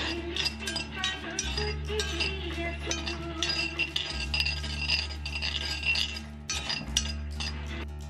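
Metal spoon clinking and scraping against a small cast iron pot as peanuts are stirred over a gas flame, a quick run of short clinks throughout. Background music plays underneath.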